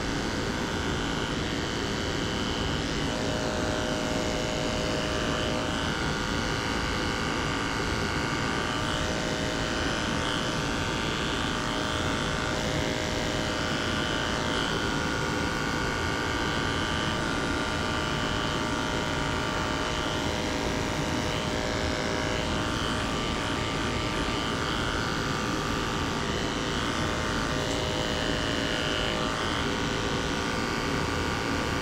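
Andis Super 2-speed electric dog clipper fitted with a #15 blade, running steadily as it shaves the hair off a poodle's feet.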